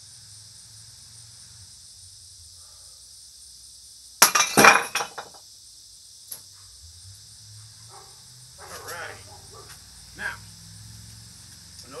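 Two stacked concrete slabs, laid without spacers, breaking under an iron palm strike: one loud crack about four seconds in, then about a second of crumbling and falling concrete. A few small clatters of broken pieces follow, over steady cricket chirring.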